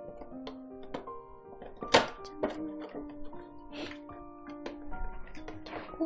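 Background music with handling noises of a cardboard box being slid out of a clear plastic sleeve: scattered rustles and clicks, with a sharp knock about two seconds in.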